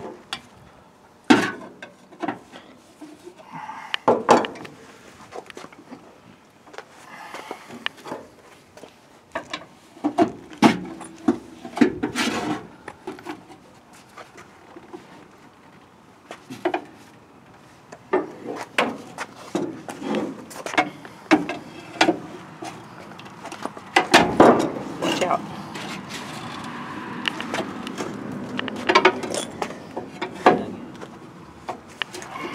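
Irregular metal knocks, clunks and scraping from a seized front brake drum on a 1967 Ford Galaxie 500 being twisted and pried loose; the brake shoes are rusted to the drum after years of sitting. The loudest knocks come about a second and a half in, about four seconds in, and near twenty-four seconds.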